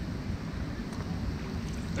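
Steady low rumble of wind on the microphone, with no distinct events.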